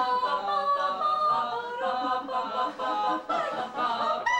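Three voices singing an original a cappella score in harmony, notes held and moving together.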